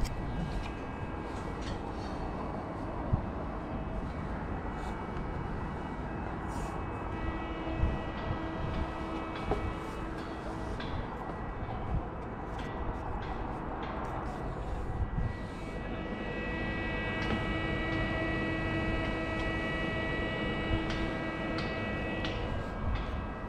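Wind buffeting an action camera's microphone high on a steel tower crane, with knocks and clanks of hands and boots on the mast's steel ladder and rails. A steady multi-pitched machine whine, likely from the crane's drive machinery, sits under the wind and grows stronger near the end.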